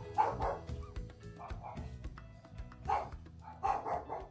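Music playing, with a dog barking over it in short barks several times.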